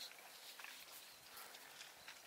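Near silence, with a few faint scattered clicks and rustles from a desert bighorn sheep moving through dry brush and rock.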